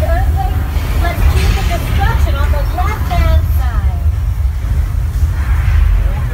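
Loud, steady low rumble of a staged earthquake effect in a subway-station set, with voices calling out over it in short stretches.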